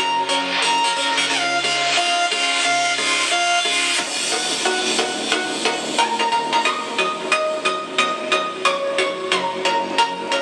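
Music played at maximum volume through a Boult Crystal portable Bluetooth speaker, picked up by a camera's microphone: held synth-like notes over a steady, even beat. The low notes drop out about four seconds in and come back near the end.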